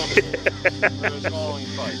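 A man laughing in a run of short, quick pulses.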